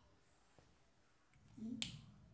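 Quiet room tone, then near the end a brief low voiced hum followed by a single sharp click.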